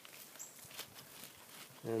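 Gloved hands pushing and scraping loose potting soil into a small plant pot: faint, soft rustles and scuffs.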